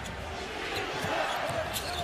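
Basketball dribbled on a hardwood court over steady arena crowd noise, with a few sharp strikes and short high squeaks from sneakers on the floor.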